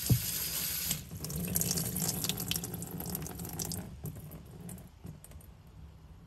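Water spraying onto a potted Haworthia and splashing into a utility sink, in two bursts. The first stops about a second in and the second runs to about four seconds in, then it dwindles to dripping and trickling.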